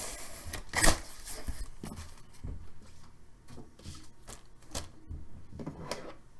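Trading cards and their packaging handled close to the microphone: a scatter of light clicks and rustles, with a louder burst about a second in.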